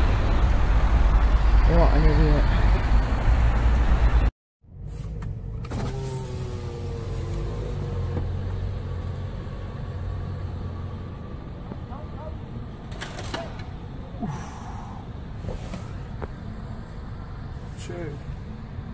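A car driving past with a loud, low exhaust rumble. After a sudden break, a Lamborghini Gallardo's V10 runs quietly at low speed as the car creeps into a garage entrance, heard from inside another car, with a few sharp knocks near the end.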